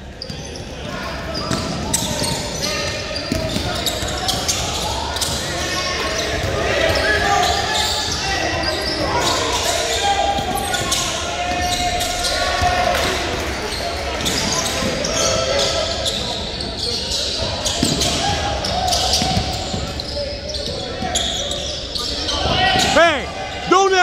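Indistinct voices and a basketball bouncing on a hardwood gym floor, echoing in a large hall.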